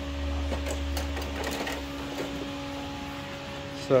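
A steady mechanical hum with a few faint clicks and knocks; a deeper rumble under it stops about a second and a half in.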